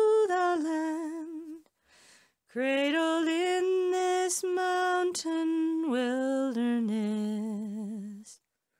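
A woman singing a slow, unaccompanied ballad, holding long notes with vibrato, with a short breath pause about two seconds in.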